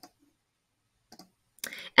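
Two short computer mouse clicks about a second apart, made while picking an option from a web-form dropdown menu.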